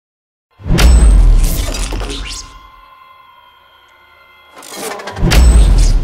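Designed intro sound effects: two loud bass-heavy booming hits with crackling, shattering noise on top, the first about a second in and the second swelling up near the end. Between them a faint steady electronic hum.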